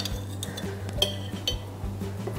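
Metal spoon and fork clinking twice against the dishes while serving, about half a second apart, over soft background music.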